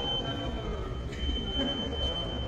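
Walk-through security metal detector sounding its alarm as someone passes through with metal on them: a high, steady beep that breaks off about half a second in and starts again about a second in, over a low background rumble.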